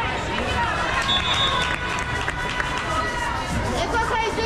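Indoor volleyball game sounds in a gymnasium: sneakers squeaking on the hardwood court, two sharp knocks about midway, over a constant din of crowd voices.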